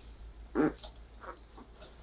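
A child's brief, soft vocal sound about half a second in, followed by a few faint small noises.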